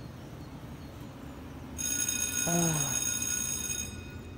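Electric school bell ringing, starting about two seconds in and lasting about two seconds.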